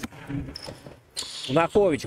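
Faint court sound of a basketball being dribbled on an indoor hardwood floor, low under a short gap in the commentary.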